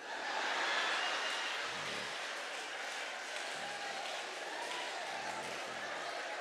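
Audience applauding, swelling in the first second and then holding steady.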